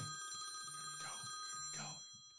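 Faint electronic ringing: several steady high tones with a soft low hum pulsing on and off about once a second, fading away at the end.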